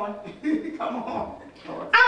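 A woman preaching into a handheld microphone, her voice coming in short, quieter phrases between louder speech; the words are not made out.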